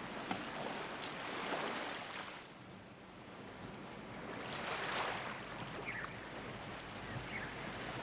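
Sea surf washing on a beach: a hiss that swells and fades in two slow waves.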